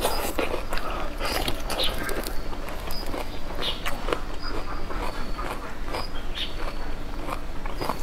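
Close-miked chewing and mouth sounds of a person eating a whole green chili pepper, a run of short, irregular smacks and clicks.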